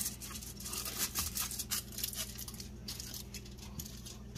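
Aluminium foil crackling and crinkling in a run of small irregular clicks as a glass lid is pressed down onto a foil-sealed pot, over a low steady hum.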